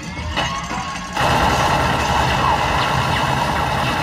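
A film's shootout soundtrack played in a cinema and recorded on a phone: music, then from about a second in a loud, sustained din of automatic gunfire.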